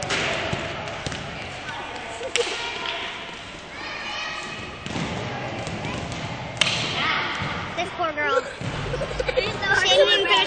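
Echoing gymnasium ambience: distant voices and the occasional thud of a basketball bouncing. Giggling comes in near the end.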